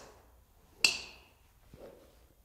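A driver swung through the bottom of a practice swing, clipping the tip of a tee on a hitting mat. It makes one quick, sharp swish-and-tick about a second in, with a brief ringing tail.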